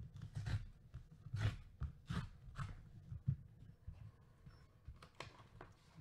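Cardboard mailer being handled and torn open along its tear strip: a series of irregular crackling rips and scrapes of paperboard, with light knocks of hands on the box.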